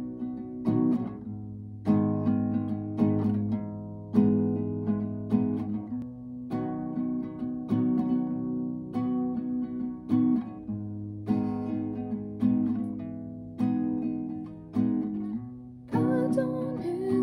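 Nylon-string classical guitar playing a slow chord pattern, a new chord struck about every half second to second and left to ring.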